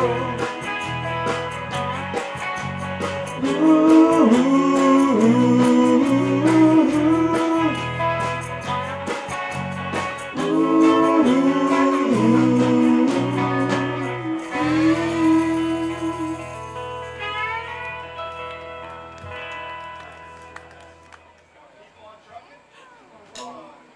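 Live rock band playing the instrumental end of a song: a melodic guitar line over bass and drums. About fourteen and a half seconds in the band stops on a final chord that rings and fades away.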